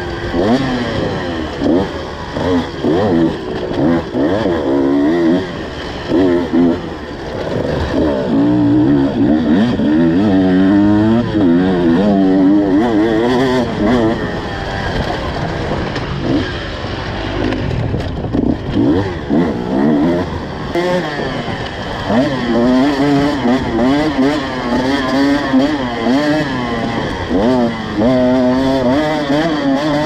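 Two-stroke enduro motorcycle engine revving up and down over and over as the bike is ridden along a rough dirt trail, the pitch rising and falling every second or two with the throttle.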